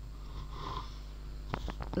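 A person's breath drawn in close to the microphone, then a few soft clicks in the last half second, over a steady low hum.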